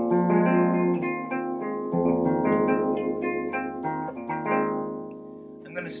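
Squier Deluxe Hot Rails Stratocaster electric guitar played on its bridge Hot Rails pickup: a run of picked notes and chords that thins out about five seconds in.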